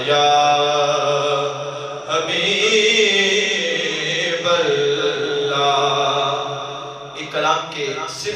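A man's voice chanting a devotional recitation over a microphone, holding long drawn-out notes with short breaks about two seconds and four and a half seconds in.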